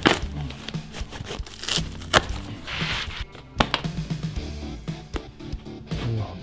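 Background music under the handling of a cardboard shipping box and packaging as it is opened: several sharp clicks and knocks, and a brief rustle about three seconds in.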